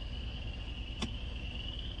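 A single sharp click of the dashboard traction control button being pressed about a second in, over a low steady rumble and a constant high-pitched whine.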